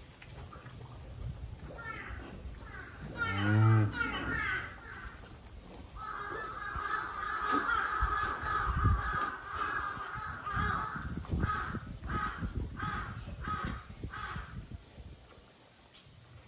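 Crows cawing: a long run of calls in the middle, then a string of short caws about twice a second near the end. About three seconds in there is one short, low-pitched call, with low rustling throughout.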